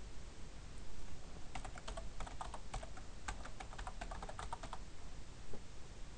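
Typing on a computer keyboard: a quick, faint run of key clicks from about a second and a half in until nearly five seconds in, as a line of code is written.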